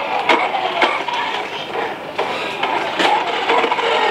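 Remote-control toy Toyota FJ Cruiser's small electric motor and gearbox whirring as it drives along a hard counter, with several sharp clicks.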